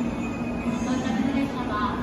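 Shinkansen bullet train approaching the platform: a steady train rumble under the station roof, with a voice over it.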